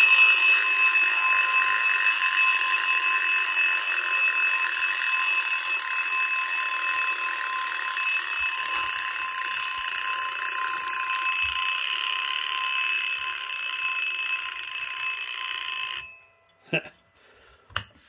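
Electronic alarm of the Model 45 tube clock, sounding a digital imitation of an old mechanical bell alarm clock's rapid ringing. The ring runs steadily and cuts off suddenly about sixteen seconds in, followed by two short clicks.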